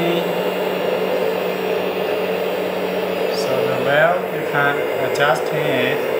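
Electric-driven hydraulic pump of a 1/14-scale metal RC hydraulic excavator running with a steady whine, powering the fork attachment's rotator as it turns slowly.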